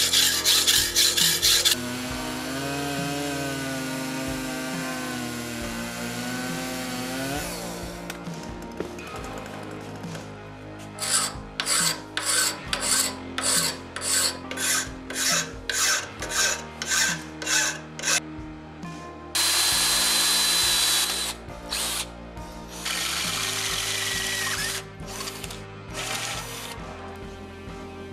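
Hacksaw cutting 5/32-inch O-1 tool steel clamped in a bench vise, the blade rasping back and forth in regular strokes, about one and a half a second through the middle stretch. A C-clamp is fixed on the stock to damp ringing and resonance from the cut. A steady harsh noise lasts about two seconds past the middle.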